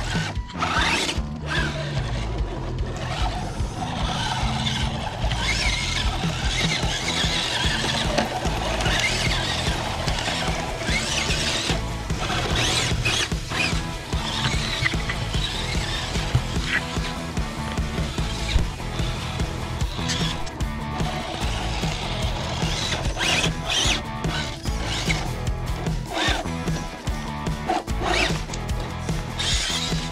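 Losi Night Crawler 2.0 RC truck's electric motor and drivetrain whining, rising and falling in pitch, with scattered knocks as it crawls over rocks, over a background music track.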